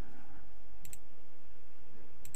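A single computer mouse click, a quick press-and-release pair about a second in, clicking OK in a dialog box. It sits over a steady low background noise.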